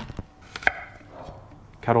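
Kitchen knife cutting peeled potatoes on a chopping board: a few sharp knocks of the blade on the board in the first second, then quieter handling.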